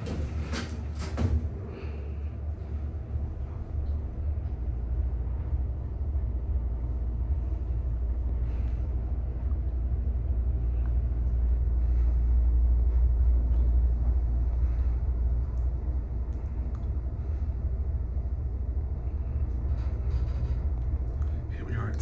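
Fujitec destination-dispatch elevator car travelling upward, a steady low rumble of the car in motion that swells through the middle of the ride and eases toward the end. A few sharp knocks come in the first second or so.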